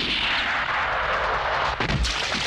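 Film gunshot sound effect with a long echoing tail: a noisy rush that fades slowly over almost two seconds. A sharp hit cuts in near the end.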